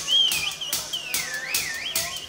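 Live rock concert recording: scattered claps and crowd noise, with a high, wavering whistle that slides up and down in pitch.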